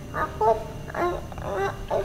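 A woman's voice making four short, broken, indistinct vocal sounds, halting and wordless, from someone treated as possessed and speaking for a spirit.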